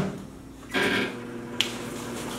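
Microwave oven started from its keypad: under a second in, a short burst of noise settles into a steady electrical hum. A single sharp click comes a little later.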